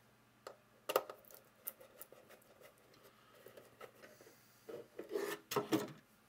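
Hard 3D-printed plastic parts of a wheel-and-spring suspension assembly clicking and rubbing as they are pressed into place against a printed garbage can's base. One sharp click comes about a second in, then lighter scattered ticks, and a cluster of louder rubbing and knocking near the end.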